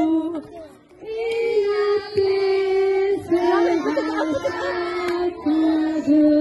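A large group of young children singing together, holding long notes, with a short break about a second in.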